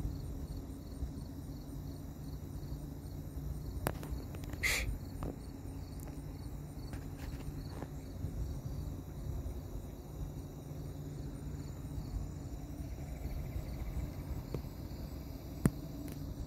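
Insects chirping in a steady pulsing rhythm over a low, steady mechanical hum, with a few brief clicks.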